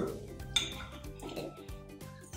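Knife and fork clinking and scraping on a plate as food is cut and picked up, a few light clinks over quiet background music.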